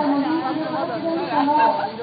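Speech only: people talking, with voices overlapping.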